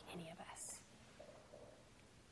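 A woman's voice softly trailing off on her last words in the first half-second, then near silence: room tone.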